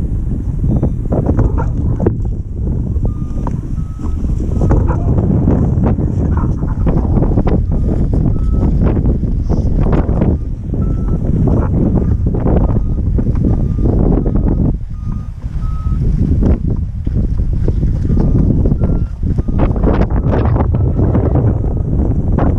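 Strong gusty wind buffeting the microphone, with short high beeps at irregular intervals, each a slightly different pitch, typical of a hang glider's variometer responding to the gusts.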